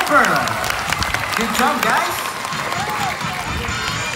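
Audience applauding, a dense patter of hand claps that slowly dies down, with a few voices over it.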